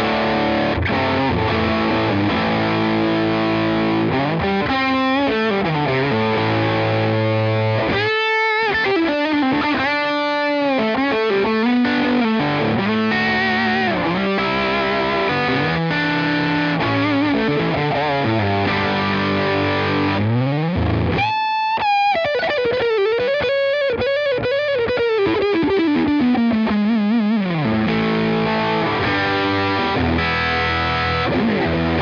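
Epiphone Les Paul Traditional Pro II electric guitar through an overdriven Tone King Sky King amp, played as a lead line with held notes, string bends and vibrato. About two-thirds of the way through, a high held note gives way to a line that bends and slides downward.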